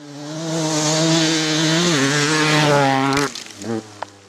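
A motorcycle engine running at steady high revs, growing louder over the first second. Its pitch drops about halfway through, then it cuts off suddenly, leaving a brief echo.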